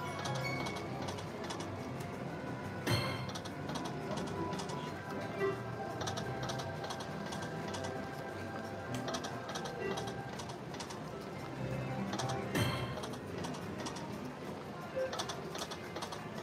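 Video slot machine's game music and reel-spin sound effects over several quick spins, with runs of light ticking as the reels turn and stop, and a couple of sharper clicks, about three seconds in and again about three-quarters of the way through.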